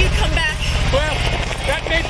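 A low, steady rumble from a hovering jet-powered bike's engine, a film sound effect, under a woman's spoken line.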